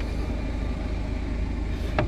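A steady low rumble under an even background noise, with no distinct events.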